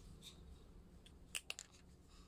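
Quiet handling sounds from a cotton pad being rubbed over a small child's fingernails to clean them: faint rustling, with two or three light clicks about a second and a half in, over low room tone.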